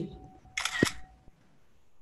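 Camera shutter sound, once, about half a second in, as a photo is snapped.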